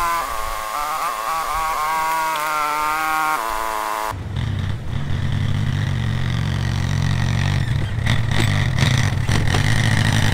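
A four-wheeler's engine runs close by, a steady low rumble that starts abruptly about four seconds in. Before that there is a pitched sound whose pitch wavers up and down.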